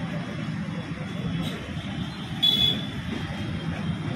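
Road traffic running steadily, with a short high-pitched horn beep about two and a half seconds in.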